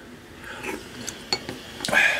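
A few light clicks and taps of a wooden spoon against the bowl as the broth is tasted.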